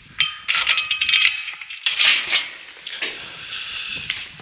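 Galvanised steel cattle-pen gate clanking and rattling as its latch is worked and the gate swung open, with a run of sharp metal knocks in the first second and a half and another about two seconds in, each ringing briefly.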